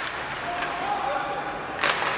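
Ice hockey play in an arena. Players' voices call out faintly, and near the end there is one sharp crack of the puck being struck.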